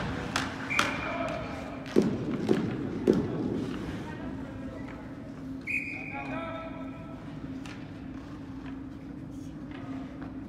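Indoor ice hockey rink sound during play: a steady low hum under distant shouting voices, with a few sharp knocks of sticks or puck about two to three seconds in.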